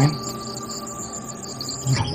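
Crickets and other night insects chirping in a steady, high-pitched chorus.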